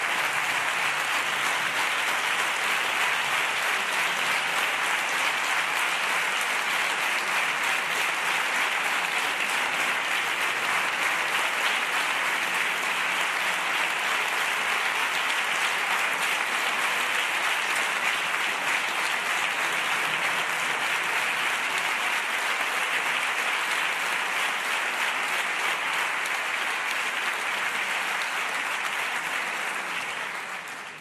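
Long, steady applause from a chamber full of parliamentarians, dying down at the very end.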